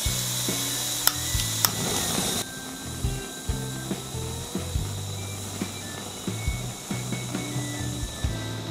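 Primus P-153 canister gas stove with its valve open: gas hissing, two sharp clicks about a second in, then the hiss drops suddenly about two and a half seconds in as the burner lights, burning at first in only one of its four sections.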